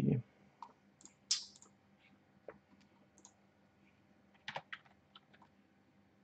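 A few faint, irregular computer keyboard clicks, with a small cluster of them about four and a half seconds in.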